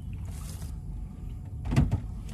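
Steady low rumble inside an SUV's cabin. A short hiss comes about a quarter second in, and a brief thump comes near the end.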